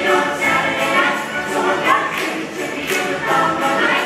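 A large ensemble cast sings an upbeat musical-theatre number together, with musical accompaniment, heard from the audience.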